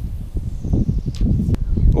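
Wind buffeting the microphone: an irregular low rumble, with a single sharp click about one and a half seconds in.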